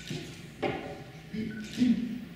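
Quiet room tone in a reading room, with one sharp knock about half a second in and a brief faint voice sound near the end.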